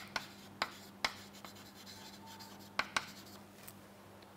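Chalk writing on a chalkboard: a string of short, sharp taps and brief scratches, clustered in the first second and again about three seconds in, over a faint steady hum.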